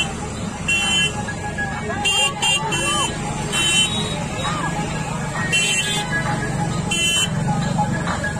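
Vehicle horns beeping over and over in short, high-pitched toots, some in quick runs of two or three, with people talking and motorcycle and car engines running underneath.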